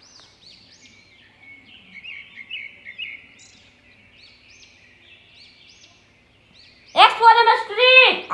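Faint bird chirps in the background: short, high, rising-and-falling calls repeating, a little louder between about two and three seconds in.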